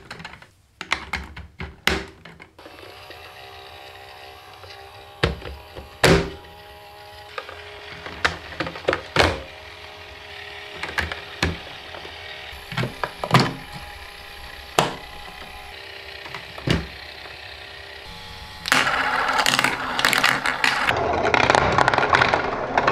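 Plastic VTech marble run pieces pressed and snapped together by hand: a series of sharp single clicks and knocks, a second or more apart. About nineteen seconds in, plastic marbles start rolling and rattling down the plastic track, a dense, continuous clatter that is much louder.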